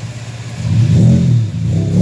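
Pickup truck engine revved from idle, heard from inside the cab: its pitch rises and falls about twice, starting about half a second in.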